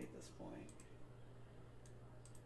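Quiet computer mouse clicks, a few in the first second, over a low steady hum; a brief faint murmur of voice about half a second in.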